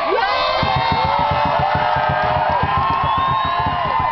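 A drum group singing in high, held voices over a fast, even beat struck on a drum, in the powwow style.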